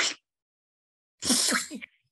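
A man making a vocal sound effect, two short breathy, hissy mouth noises about a second apart, imitating a small creature licking out plates and cups.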